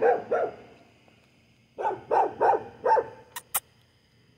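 A stray mother dog that has just had puppies barking in short runs, two barks at the start and four more about two seconds in, keeping an approaching person away. Two sharp clicks follow near the end.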